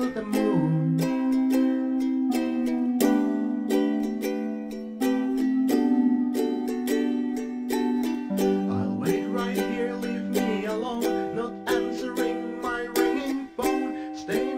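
Instrumental passage of a lo-fi song: ukulele strummed in a regular rhythm over held chords.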